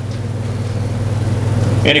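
A steady low hum, fairly loud, filling a pause in a man's speech, with his voice starting again just before the end.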